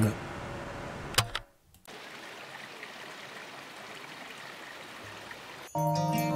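Steady, even rush of running water from a stream, broken by a short dropout about a second and a half in.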